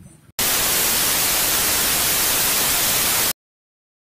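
Television static: a steady, even hiss of white noise that starts abruptly about half a second in and cuts off suddenly near the end.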